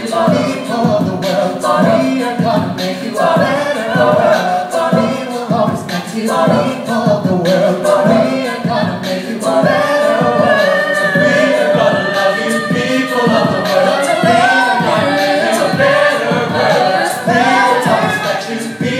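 A mixed group of men and women singing a cappella into microphones, several voices in close harmony over a steady rhythmic pulse, amplified through a hall's PA and heard from the audience.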